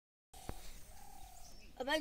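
Faint bird calls: two soft, drawn-out notes, the first starting about a third of a second in and the second about a second in, with a single click around half a second in. A voice starts speaking near the end.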